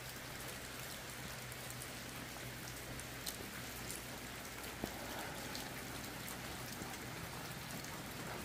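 Steady light rain falling on tin roofing and the wet yard, with a couple of single drops striking close by, about three and five seconds in.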